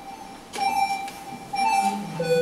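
Opening of a recorded children's clothing song: a bright pitched note repeated at the same pitch about once a second before the melody moves on.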